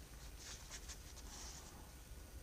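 Faint rustling of a flimsy paper packet as a set of thread measuring wires is handled, with a few soft crinkles about half a second in and around a second and a half.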